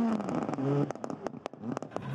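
Hyundai Rally2 car off the road in a snowbank, its engine note fading away. Then comes an irregular run of sharp crackles and clicks for about a second.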